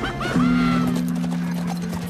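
Film soundtrack: a horse whinnies near the start over galloping hoofbeats, then music settles into a steady held low chord.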